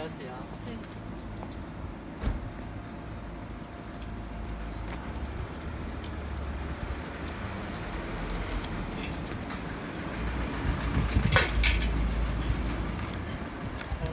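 Industrial screw juicer's electric motor running with a steady hum, under a low rumble that swells and fades. Scattered light clicks, and a short metallic clatter about eleven seconds in.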